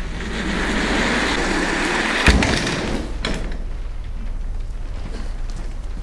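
Rolling office chair's casters running across a hard classroom floor, with a sharp knock about two seconds in and a smaller click a second later.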